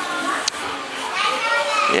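Children talking and playing, their high voices rising and falling and getting louder in the second half, with a single sharp click about a quarter of the way in.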